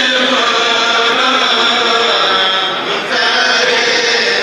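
A Senegalese Mouride kourel, a chanting group of men, chants a khassaide together in unison. Many voices hold long notes, with a brief dip and a new phrase starting about three seconds in.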